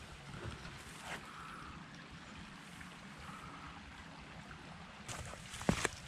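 Faint, steady running of a small woodland stream. A few sharp footstep knocks come near the end.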